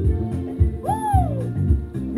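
Background music with a steady beat, over which an African grey parrot gives one short whistled hoot about a second in, rising and then falling in pitch: a whistle given before her cue.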